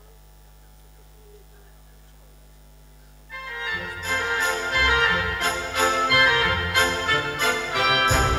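A low steady electrical hum, then a little over three seconds in, electronic keyboards start playing a tune with full orchestral-style accompaniment and percussion.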